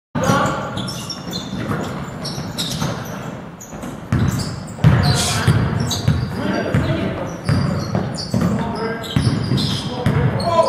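A basketball being dribbled on a hardwood gym floor, with sharp bounces at irregular intervals as players move the ball, and players' voices calling out over them.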